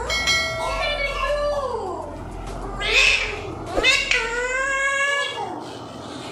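Alexandrine parakeet calling: a long wavering call that falls in pitch, a short harsh squawk about three seconds in, then another long call.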